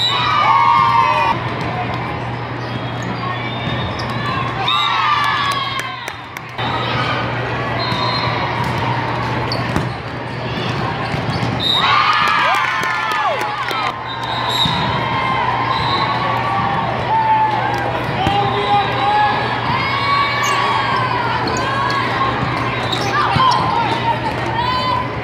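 Indoor volleyball rally in a large hall: players and spectators shouting and calling over a steady low hum, with the sharp knocks of the ball being hit.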